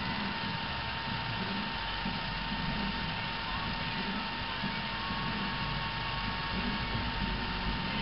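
Steady low hum and hiss with a thin, steady high whine, unchanging throughout; no distinct sound events stand out.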